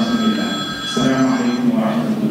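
Public-address microphone feedback: several steady high-pitched ringing tones that stop shortly before the end, over a steady low hum.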